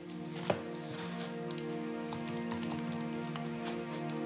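Film score of sustained chords, with computer keyboard typing, a run of quick clicks, from about a second and a half in. A single sharp click about half a second in is the loudest sound.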